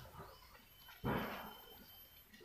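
A rustle of a large taro leaf being folded by hand around a bundle of dry bamboo leaves, one crackling swish about a second in that fades quickly.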